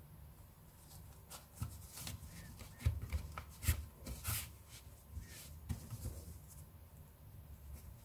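Hands working a large-eye needle and T-shirt yarn through a crocheted circle to weave in the yarn tail: soft rustling of the cotton fabric with a run of small clicks and scrapes in the middle, the sharpest about three seconds in.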